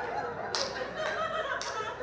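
Comedy club audience laughing after a punchline, with a few claps.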